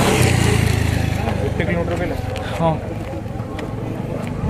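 A motor vehicle's engine running with a steady low hum that surges at the start and gradually fades away, as of a vehicle passing close by and moving off.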